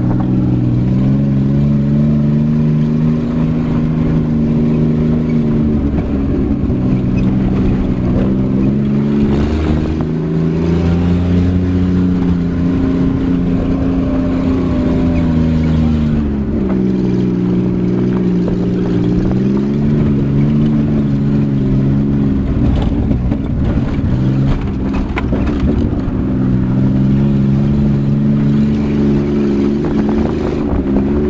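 Vehicle engine heard from inside the cab while driving a rough mountain dirt road, its pitch rising and falling as the revs change, with some knocks and rattles about three-quarters of the way through.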